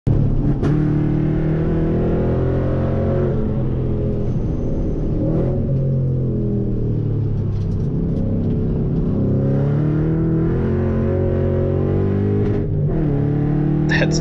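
S197 Saleen Mustang's V8 heard from inside the cabin while lapping a road course, its pitch climbing under acceleration and dropping several times as the driver lifts and shifts.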